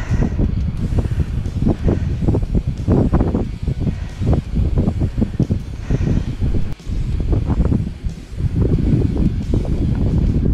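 Wind buffeting the microphone: a loud, low rumble that rises and falls in irregular gusts, with brief lulls near the middle.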